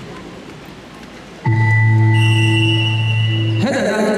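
Competition timing buzzer sounding one loud steady tone for about two seconds, starting about a second and a half in and cutting off suddenly, stopping the wrestling bout. Before it there is only general sports-hall noise.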